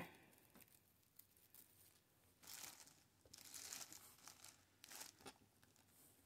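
Faint crinkling rustle of plastic deco mesh being gathered and bunched by hand, in three short spells in the second half.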